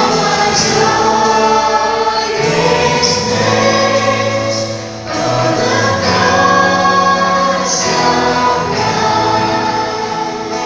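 Live worship band performing: a male lead singer and female backing singers singing long held notes over electric bass and electric guitar.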